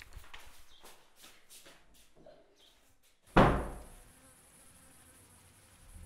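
Light paper rustles and taps, then one loud sudden thump a little past halfway. After the thump a steady high insect drone runs on.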